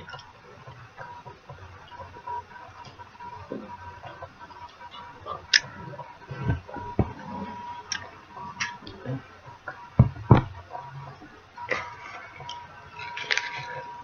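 Quiet chewing and mouth clicks as a chewy ginger candy is eaten, with scattered small knocks, a few low thumps around six and ten seconds in, and a rustle near the end. A faint steady high whine runs underneath.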